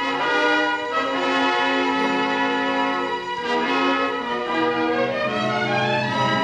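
Orchestra playing an instrumental passage of an opera, with brass holding sustained chords that move to a new chord about every second.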